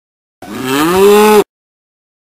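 A single loud cow moo, about a second long, rising in pitch and then holding steady before cutting off abruptly.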